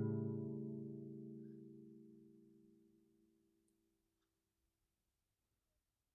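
Final chord of an acoustic folk song on plucked strings, ringing out and dying away over about three seconds.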